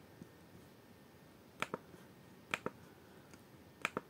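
Computer mouse button clicked three times, about a second apart; each click is a quick pair of sharp ticks as the button is pressed and released.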